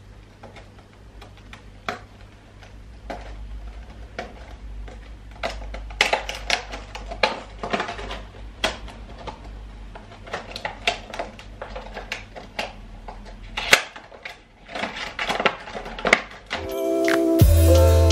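Rigid clear plastic packaging of a set of wire string lights being handled and pried open, with irregular crinkling clicks and crackles. Music with a heavy bass beat comes in near the end.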